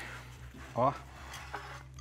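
Mostly quiet studio room tone with one short spoken word, and a few faint clicks from a pizza being slid off a metal pizza pan and the pan lifted away.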